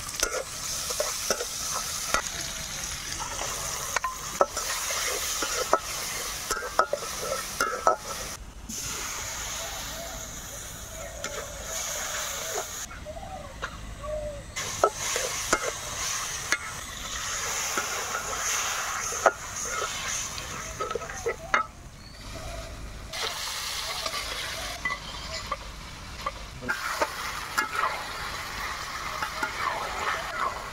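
A spatula stirring and scraping food in a sizzling iron wok: onions, then spice paste and cucumber pieces frying in oil. The spatula makes frequent short scrapes and knocks against the pan over a steady sizzle, and the sound breaks off and changes abruptly several times.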